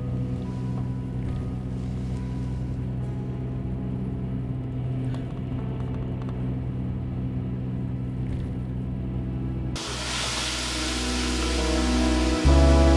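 Steady low rumble of a coach bus running, heard from inside the cabin, under soft background music. About ten seconds in it cuts to a loud hiss of food sizzling in a frying pan on a gas stove.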